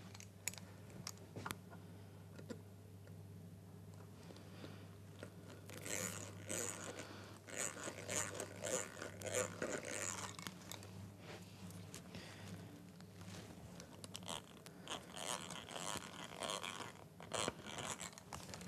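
Screws being driven by hand through a copper scratchplate into a wooden guitar body: bursts of crunching and scraping with scattered clicks, over a low steady hum.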